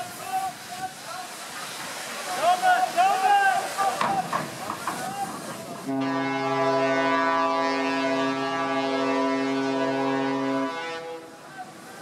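People shouting, then about six seconds in the ferry Ostend Spirit's ship horn sounds one long steady blast of nearly five seconds before cutting off. The ferry is running onto the beach at speed.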